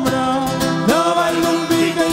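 Mallorcan folk jota played on guitars and other plucked strings in a steady strummed rhythm, with a voice holding long sung notes that slide up to a new pitch about a second in.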